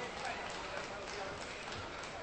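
Hall hubbub of voices and chatter, with a few light sharp clicks typical of table tennis balls bouncing.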